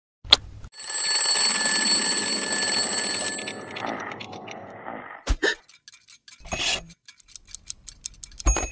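Twin-bell alarm clock ringing for about three seconds, then stopping and fading. A sharp click follows, then light, even ticking.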